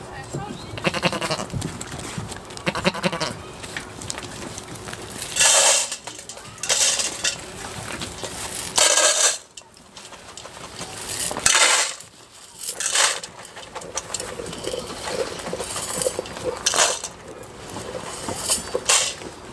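Goats bleating several times, mostly in the first few seconds, mixed with several short, loud bursts of rustling noise.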